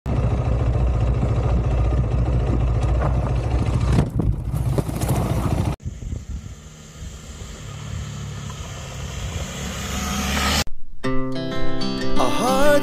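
Adventure motorcycle engine running as the bike is ridden on a dirt track, heard in separate cuts: loud and close for the first few seconds, then quieter and growing louder as the bike approaches. Guitar music starts near the end.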